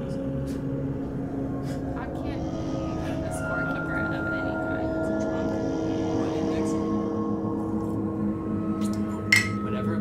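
Slow ambient music with long held tones, then near the end a single sharp clink of drinking glasses touching in a toast.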